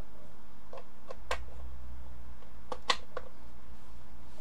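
Light plastic-and-metal clicks of a USB plug being pushed into and seated in the USB sockets of a car jump starter pack, a few scattered clicks with the sharpest just before three seconds, over a steady low hum.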